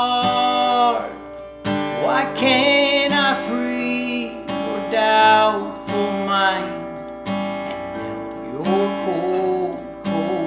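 Acoustic guitar strummed through the chords of a country song, with a man singing the melody over it in held, wavering notes.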